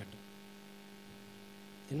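Steady, faint electrical mains hum from the microphone and sound system.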